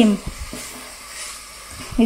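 Chopped callaloo with onions and peppers sizzling steadily in a hot metal pot while a spatula stirs it.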